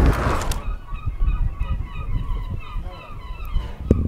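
Many birds calling faintly in the distance, short repeated honk-like calls over a low wind rumble. Wind noise on the microphone is heard at the start and cuts off about half a second in.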